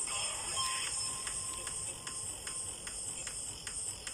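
Wood campfire crackling, with sharp pops at irregular intervals and a brief thin whistle about half a second in.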